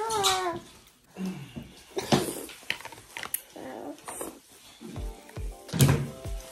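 A short wordless vocal sound that rises and falls in pitch at the very start. It is followed by eating noises, with several sharp clicks of utensils against a bowl and some chewing and slurping.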